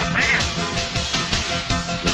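Film soundtrack music with a steady beat, and a brief high note that rises and falls about a quarter second in.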